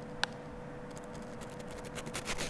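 Quiet kitchen room tone with a faint steady hum, and one small sharp click about a quarter of a second in.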